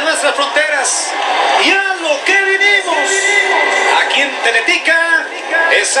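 A Spanish-language football commentator's voice coming through a television speaker in a room as play kicks off. In the middle he draws one word out into a long held call of about two seconds.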